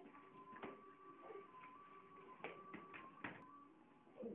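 Very quiet room with faint background music, a simple tune of held notes, and a few light taps or knocks.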